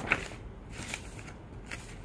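Printed paper sheets being handled and a page turned: a few short, crisp paper rustles, the loudest just after the start.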